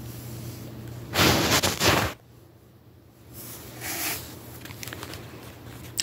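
A Chihuahua sniffing and snuffling right at the phone's microphone: a loud burst about a second in lasting about a second, and a fainter one near the four-second mark.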